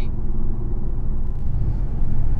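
Infiniti Q50 cruising at a steady speed, heard from inside the cabin: a steady low engine drone and road rumble, growing slightly stronger in the second second.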